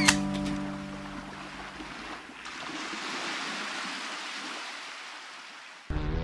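A ukulele song ends on a last chord that dies away within the first second. Then a soft, rushing hiss swells about two and a half seconds in and slowly fades out.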